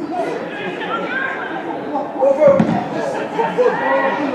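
Indistinct voices of spectators and players talking and calling out across a football ground, with a single loud thud about two and a half seconds in.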